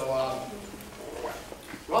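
A man's voice: a drawn-out 'so' at the start, then hesitant, quieter speech sounds before he carries on talking.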